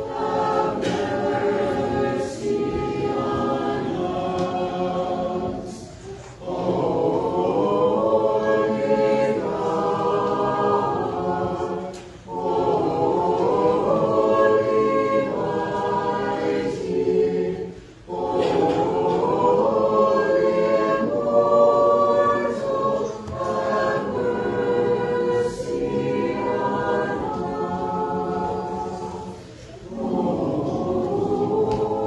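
Church choir singing an unaccompanied Orthodox liturgical hymn in several voices, in phrases of about six seconds with short breaks for breath between them.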